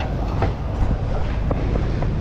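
A steady low rumble, with a few short sharp metallic clicks as steel suspension parts are handled.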